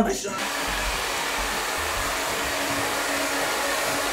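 Handheld hair dryer blowing steadily, starting about half a second in.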